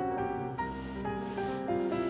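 Soft rubbing strokes across the surface of a canvas oil painting, starting about half a second in, over gentle piano music.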